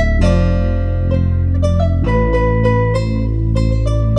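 Melodic trap instrumental at 131 BPM in A minor: a plucked guitar melody over deep, long-held 808-style bass notes that change near the start and again about halfway.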